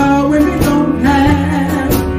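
A woman singing a classic blues number live with a small band behind her. Her voice slides up into a long held note at the start.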